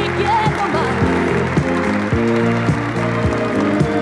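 A 1970s Italian pop song playing, with sustained chords over a steady beat of about two strikes a second, and a brief wavering vocal note early on.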